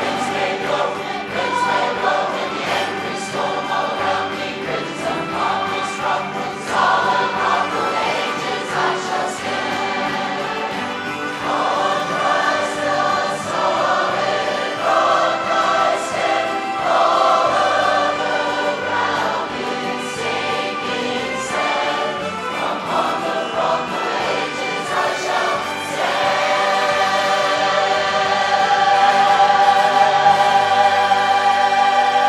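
Large mass community choir singing a worship song in parts, growing louder near the end and holding a long note.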